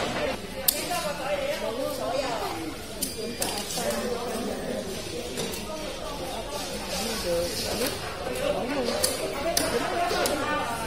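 People talking in the background, voices overlapping, with a few sharp clicks: one near the start and two near the end.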